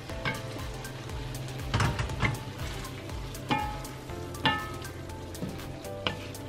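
Spaghetti being tossed with two wooden spoons in an enameled cast-iron pan, the oil-and-pasta-water sauce sizzling softly underneath. A few sharp knocks of the spoons against the pan come about two, three and a half, and four and a half seconds in.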